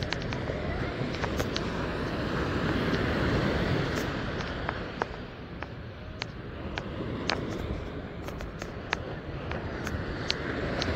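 Ocean surf breaking and washing up a sandy beach, a steady rush that swells about three seconds in and eases off again. Scattered sharp clicks sound over it.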